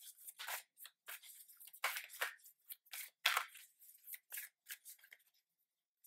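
A Work Your Light Oracle card deck being shuffled by hand: a quick, irregular run of faint papery flicks and slides of cards, stopping about five seconds in.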